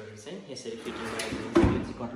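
Kitchen drawer fitted with a stainless steel pull-out basket sliding along its runners and shutting with a bang about one and a half seconds in.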